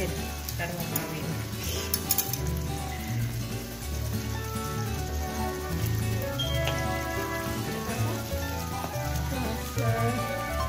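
Chicken cooking in a thick coconut-milk spice sauce in a steel wok, sizzling, with background music playing over it.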